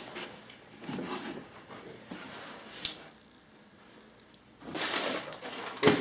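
A long cardboard shipping box being handled on a table: soft rustling with a sharp tap, a short scraping rush of cardboard about five seconds in, and a sharp knock near the end.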